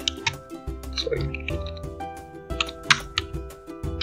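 Computer keyboard being typed on: short, irregular key clicks over background music with sustained notes.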